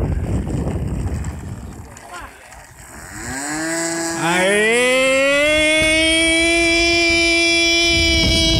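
Radio-controlled model airplane's engine throttling up for takeoff: a loud pitched note rises quickly from about three seconds in, then holds at a steady high pitch. Wind buffets the microphone before the engine opens up.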